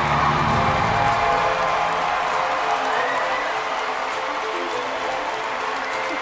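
Music playing over a crowd cheering and applauding, with a deep low note that fades out in the first two seconds.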